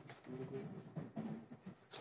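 Faint, indistinct voices speaking in short low phrases.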